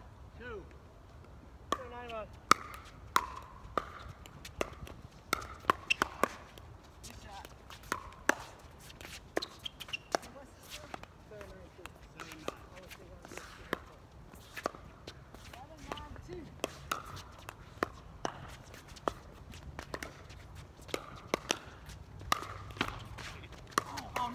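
Pickleball rally: sharp pops of paddles hitting the hard plastic ball and the ball bouncing on the court, coming irregularly about once or twice a second, with players' voices faintly between shots.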